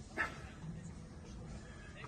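A man's short strained vocal sound, a grunt or whimper of effort, about a quarter second in, as he lowers a pair of dumbbells slowly during a biceps curl; after it only a faint low hum of breath or voice.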